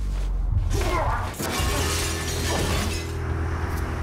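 Glass shattering in a crash that lasts about two and a half seconds, over a low, steady music drone.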